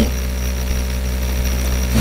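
Steady low hum with a faint high whine, unchanging throughout.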